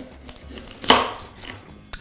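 A kitchen knife cutting an onion on a wooden chopping board: a few light taps and one sharper knock of the blade on the board about a second in.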